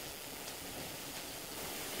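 Steady faint hiss of background room tone, with no distinct event.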